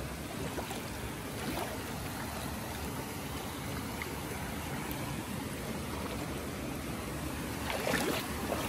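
Shallow creek water running over rocks as a person wades through it: a steady rush of water.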